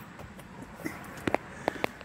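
A few light, sharp clicks, about three in the second half, over a low, steady background hum.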